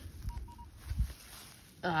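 Minelab Manticore metal detector giving two short beeps at one pitch, close together, signalling a target under the coil. A few low thuds follow about a second in.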